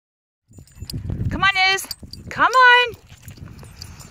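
A person's voice calling a dog by name twice, in long, high, drawn-out calls about a second apart, with a low rumble on the microphone before the first call.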